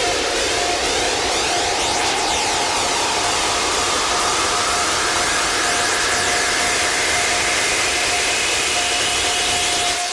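Electronic dance music build-up in a house DJ set: a flanged white-noise riser that sounds like a jet engine, over a held synth tone, with a second tone slowly rising in pitch.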